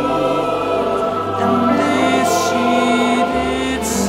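A choir singing slow, sustained chords, with low notes held beneath. Sung 's' consonants hiss about two seconds in and again near the end.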